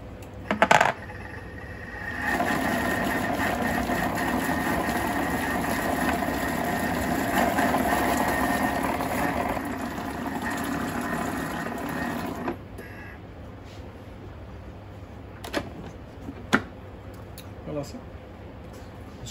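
Countertop blender-cooker running steadily for about ten seconds, blending a jar of cooked vegetables and stock to a thick purée, then stopping suddenly. A short clatter of the lid and insert being seated comes under a second in, and a couple of sharp clicks follow as the lid is opened near the end.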